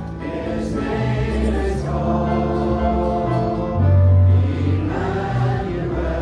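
Congregation singing a hymn together in held, steady notes over an accompanying instrument's bass line.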